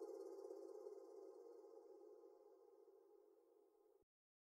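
The last sustained synth note of a progressive trance track fading out slowly, then cutting off into silence.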